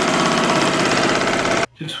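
Multi-needle embroidery machine running at speed, its needle heads making a rapid, even mechanical chatter that cuts off suddenly near the end.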